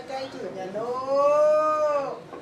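A high-pitched human voice holding one long drawn-out note of about a second, its pitch arching slightly up and then down, after a few short syllables.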